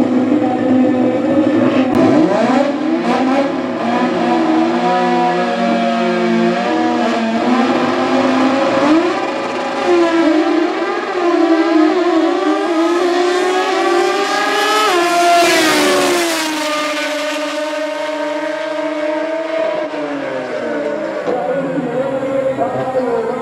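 Drag-racing engines: a naturally aspirated rotary-engined Toyota Starlet and a piston-engined rival revving at the starting line, then launching about halfway through and accelerating hard, the engine pitch climbing steeply to its loudest point. After that the sound settles to a steadier, lower tone that drops away as the cars run down the strip.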